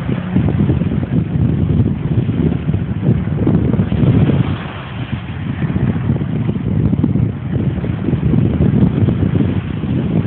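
Wind buffeting a phone's microphone: a loud, uneven low rumble that swells and dips.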